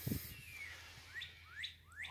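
Birds chirping faintly, a few short rising chirps toward the end.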